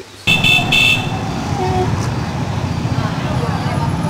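Street procession of motorcycles and a pickup truck: engines running in a dense low rumble with voices mixed in, and a horn tooting twice just after the sound cuts in.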